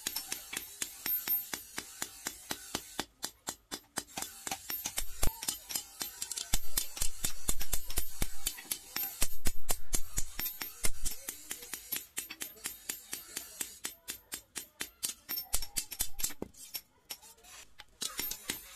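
Hand hammer beating a red-hot steel sword blade, forged from leaf-spring steel, on a small steel anvil block. The blows come fast and sharp, several a second, with brief pauses.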